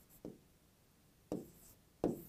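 Faint scratching of chalk writing on a chalkboard: two short strokes about a second apart.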